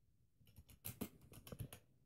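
Faint, irregular clicks and taps of a computer keyboard and mouse being worked, starting about half a second in.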